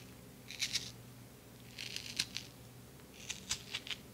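A scooper scraping out the flesh of a raw potato half, in three short bouts of scraping.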